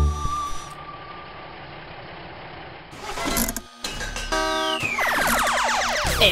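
Cartoon sound effects between two songs: the last note of a song stops and a soft hiss follows. Then come a short noisy burst and a brief tone, and a falling sweep leads into the next song's music.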